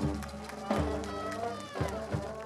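Marching band's brass section holding sustained chords, punctuated by several loud accented hits from the band and its percussion.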